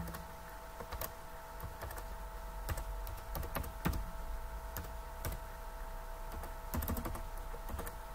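Computer keyboard typing: irregular single keystrokes, with a quick run of several keys near the end, over a steady faint hum.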